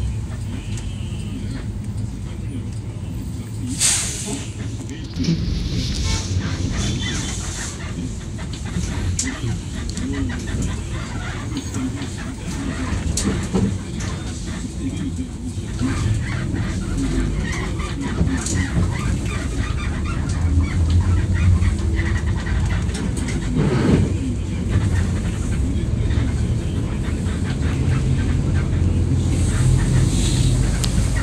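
Inside a 2013 Daewoo BS106 NGV city bus under way: the rear compressed-natural-gas engine runs with a steady low rumble under road and tyre noise. Two brief hisses cut through, about four seconds in and again near the middle.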